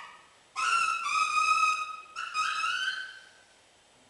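Baritone saxophone played very high in its range. After a short pause it plays two held phrases, the first starting about half a second in, the second bending upward and fading out around three seconds in, followed by another pause.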